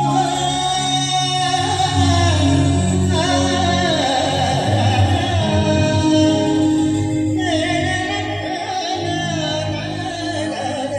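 A man singing a Hindi song live into a microphone in C-sharp major, with a wavering vibrato on held notes, over sustained keyboard chords, in a large hall.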